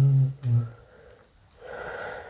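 A low voice holding a drawn-out, slightly wavering 'iii…' that stops about half a second in, followed by a brief second voiced sound, then a soft breathy noise near the end.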